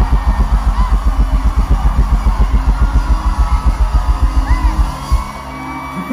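Live band's kick drum playing a fast, even roll of about eight beats a second, stopping about five seconds in after one last hit, with faint gliding whoops above.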